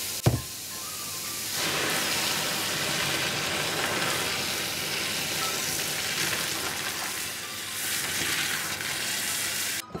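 Boiling water and noodles poured from a large stockpot into a metal colander in a stainless steel sink under a running tap. After a knock near the start, the pour brings in a loud, steady rush of splashing water about a second and a half in, which breaks off sharply just before the end.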